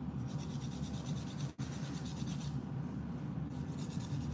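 Hand nail file rasping across the edge of a natural fingernail in quick back-and-forth strokes, with a short pause just past the halfway point, over a steady low hum.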